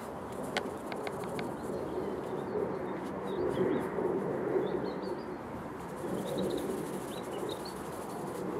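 Birds chirping outdoors: short, high calls from small birds come and go over a low rushing background that swells slowly. A few light clicks come about a second in.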